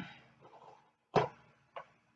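A few faint, short knocks and clicks of objects being handled on the worktable. The sharpest comes about a second in and a smaller one near the end.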